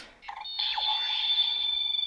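Electronic sound effect from a DX Kamen Rider Build Driver toy belt powering up: a short blip, then a high, steady electronic tone with a brief falling sweep near its start, lasting about a second and a half.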